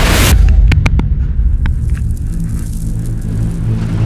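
Dirt late model race car's V8 engine idling with a steady low rumble, heard from inside the car. It opens with a short whooshing burst, and a few sharp clicks come about a second in.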